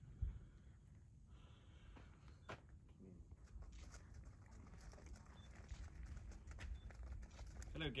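Hooves of two walking horses crunching on gravel as they come closer, faint at first and growing louder, over a steady low rumble.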